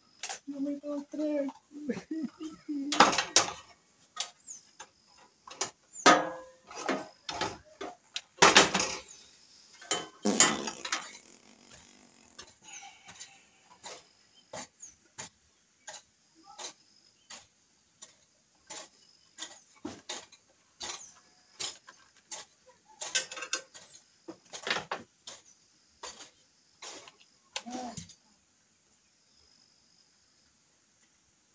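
Irregular clicks, taps and knocks of a handheld electric circular saw's housing and parts being handled and worked on by hand, as its burnt carbon brush is dealt with. The louder knocks come in the first third and again near the end.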